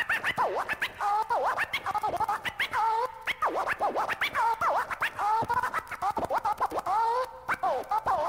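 Turntable scratching that opens a nu-metal/rapcore track: a record sample dragged back and forth in quick pitch sweeps that rise and fall, with short clicks between them and no drums underneath.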